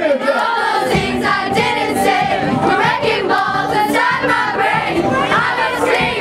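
A crowd of children shouting and singing together over music, loud and without a break.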